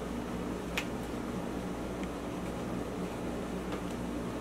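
Steady low room hum, with one short faint click a little under a second in.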